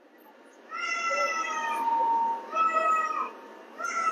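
Two drawn-out, high-pitched calls of about a second each, steady in pitch, the second dropping away at its end, with a short third one near the end.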